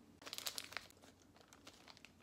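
Snack wrapper crinkling in the hands: a short run of crackles over the first second, then quiet room tone.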